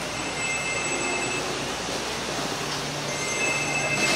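Busy covered-market ambience: a steady background hubbub with two high-pitched squealing tones, each about a second long, one early on and one near the end, from an unseen source.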